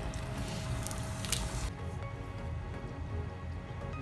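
Background music over the crackle and scrape of thin plastic water-transfer printing film being cut with a craft knife; the crackling breaks off abruptly about a second and a half in.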